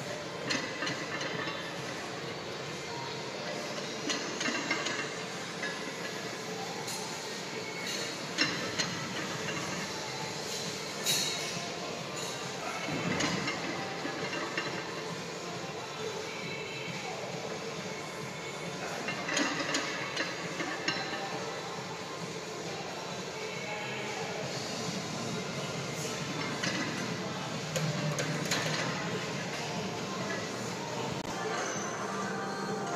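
Steady gym room noise with faint background music and voices, broken by a few sharp metallic clinks from the loaded barbell and its plates as a heavy set of back squats is worked in a power rack.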